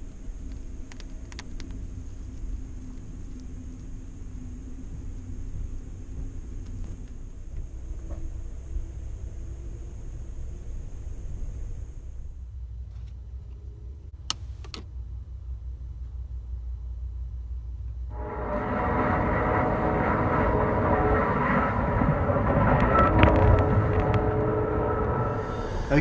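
Low, steady rumble inside a sleeping-car roomette of a moving train, with a faint high hiss over the first half. About halfway through, two sharp clicks from the roomette's wall light switch. In the last several seconds a louder, steady sound with several held tones takes over.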